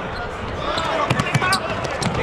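A basketball dribbled on a hardwood court, a few quick bounces about a second in, under a commentator's voice and arena background.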